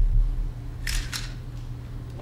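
Two still-camera shutter clicks in quick succession about a second in, over a steady low hum. A low thump comes right at the start and is the loudest moment.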